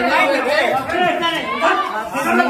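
Several people talking at once in indistinct, overlapping chatter.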